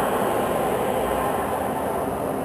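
Congregation reciting a prayer together in a reverberant church: a steady, blurred mass of many voices with no single voice standing out.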